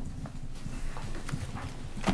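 A few light, irregular taps and clicks of papers being handled on a meeting table, picked up by desk microphones over a steady low room hum.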